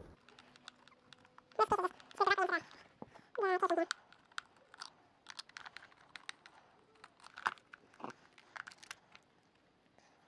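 Phillips screwdriver working screws out of a plastic vacuum cleaner housing: quiet, scattered small clicks and ticks. A person's voice sounds briefly, about two to four seconds in.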